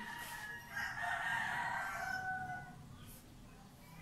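A rooster crowing once: one long call of about two seconds that falls slightly in pitch and fades out.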